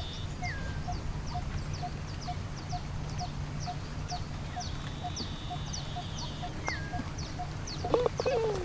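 Birds calling: one bird repeats a single short note about twice a second while high, quick falling chirps repeat at a similar pace, with a couple of brief whistles between. A thin steady high insect buzz comes and goes, over a low steady rumble. Near the end, a putter taps a golf ball once.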